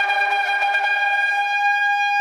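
A shofar blast: one long, steady high note held throughout.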